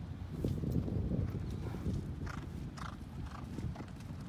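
Hoofbeats of a horse moving on grass, close to the microphone. They are loudest in the first second and a half.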